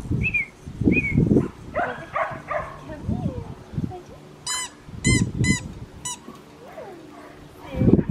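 Six-week-old Australian Shepherd puppy yipping and whimpering. There are two short squeaks in the first second, then four quick high yelps about halfway through.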